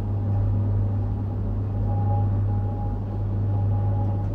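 A steady low hum, with faint higher tones coming and going over it.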